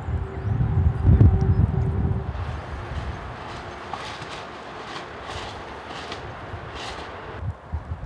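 Strong wind buffeting the microphone, heaviest in the first two seconds, over a steady outdoor hiss, with a few short high-pitched sounds in the middle.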